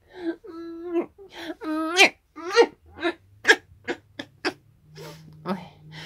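A woman's wordless cooing to a kitten: two held notes, a rising glide, then a run of short repeated sounds about two a second.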